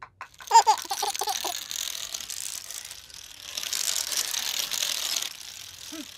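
A dense run of rapid clattering clicks, a cartoon sound effect, that swells about halfway through and cuts off sharply near the end. A baby's short giggle sounds over its start.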